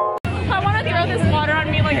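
Plucked-string music cuts off abruptly about a quarter second in. Several people then chatter and talk over one another, with music playing underneath.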